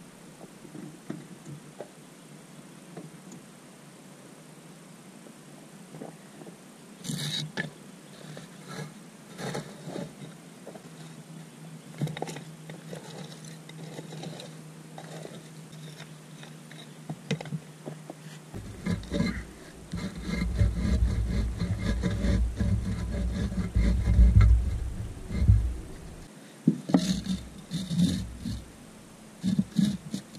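Scattered knocks, clicks and scrapes of hands-on work jacking up a shed and shifting its concrete block and wood shim supports. In the second half a loud low rumble runs for several seconds.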